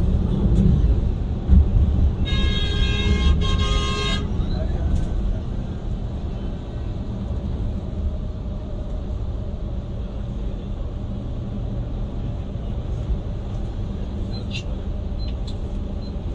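Steady engine and road rumble of a Yutong Nova intercity coach heard from inside the cab at highway speed. About two seconds in, a horn sounds for nearly two seconds, broken once in the middle.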